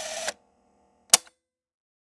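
Logo-sting sound effects: a rising whoosh that cuts off abruptly, then a single sharp click-like hit about a second in.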